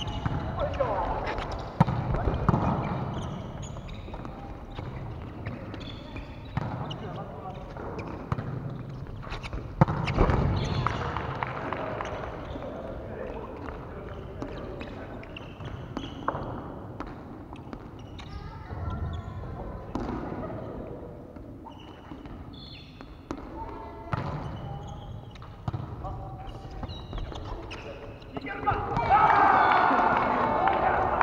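Indoor volleyball play: sharp smacks of hands striking the ball every several seconds, with players' voices calling out and echoing in the large hall. The voices grow loudest near the end.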